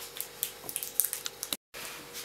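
Thin plastic wrapper crackling in scattered small clicks as it is peeled off an individually wrapped processed cheese slice. A brief dropout cuts the sound near the end.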